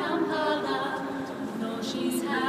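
An all-female a cappella group singing in harmony, several voices holding long chords, with a hissed 's' near the end.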